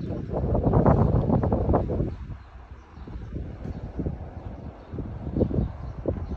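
Wind buffeting the phone microphone in gusts, strongest in the first two seconds and then lighter.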